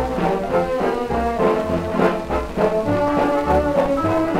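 1929 British dance band recording of a fox-trot played from a 78 rpm record: the full band with brass holding sustained notes over a steady bass beat, about two pulses a second.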